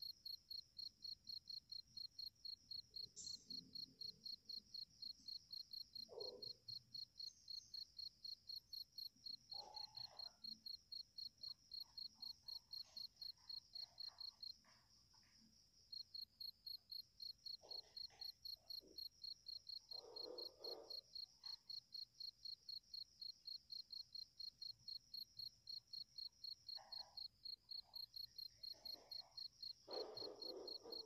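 A cricket chirping faintly and evenly, about three chirps a second, breaking off for a moment about halfway through, with a few faint short sounds lower down.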